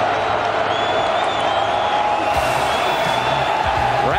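Stadium crowd noise at a college football game, with music playing over the stadium sound system. A steady din runs throughout, and low stepping notes come in during the second half.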